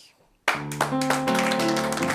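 After a brief hush, an accordion suddenly starts playing a tune about half a second in, holding sustained chords, with hands clapping over it.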